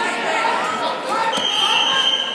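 Voices of coaches and spectators calling out in a gym hall, with a thud on the mat about a second in, then a short steady high whistle blast lasting about half a second, typical of a referee's whistle stopping the action.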